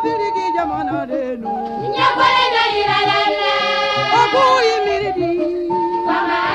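A song: a woman singing long, wavering held notes over instrumental accompaniment with a repeating bass pulse.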